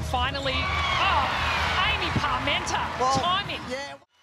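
Live netball game sound in an arena: a crowd's steady din with voices calling out, sneakers squeaking on the wooden court and the ball thudding. It cuts off suddenly at the very end.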